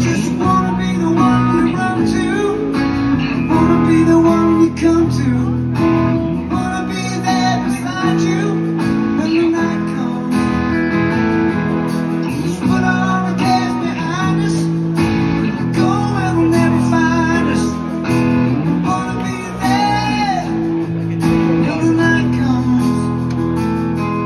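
Live acoustic guitar strumming chords, with a second guitar playing gliding melody lines over it in an instrumental stretch of a ballad.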